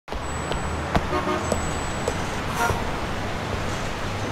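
Street traffic ambience: a steady wash of passing-traffic noise. Over it come sharp footsteps, about two a second, during the first two seconds, and a couple of short tones.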